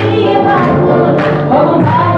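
A woman singing a song into a microphone over loud music, with the audience clapping along on the beat, roughly every half second.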